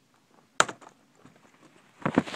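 A sharp plastic click about half a second in, followed by a few fainter clicks: a Dell Inspiron N5010 laptop keyboard being pried up off its last retaining latch.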